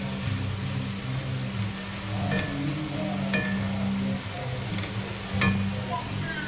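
Chicken and vegetables frying in a cast iron pot as a wooden spatula stirs them: a steady sizzle with a few sharp clicks of the spatula against the pot. Music plays underneath.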